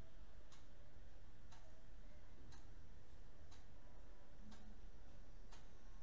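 Faint, regular ticks, about one a second, over a low steady background hum.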